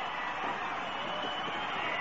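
Steady crowd noise from a wrestling arena audience, an even wash of many voices with no single call standing out.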